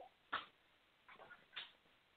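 Near silence, broken by a few faint, brief sounds.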